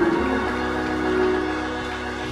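Organ holding sustained chords between shouts, the chord changing about half a second in.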